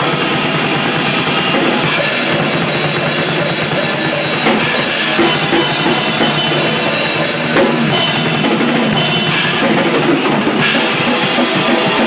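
Grindcore band playing live, loud and dense, with the drum kit's fast, close-packed bass drum, snare and cymbal strokes to the fore.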